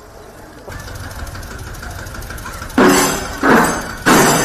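An engine running steadily with a low hum. Near the end, loud rough bursts of noise begin, about half a second each and repeating roughly one and a half times a second.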